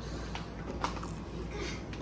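Quiet room tone with a low steady hum and a couple of faint clicks, the clearest a little under a second in.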